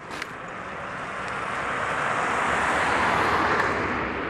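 A car driving past on the street, its rushing tyre and engine noise swelling as it nears, peaking about three seconds in, then easing slightly.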